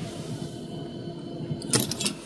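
Faint room tone with a few short, light clicks of small metal lock parts and tools being handled on a work mat, the clearest two near the end.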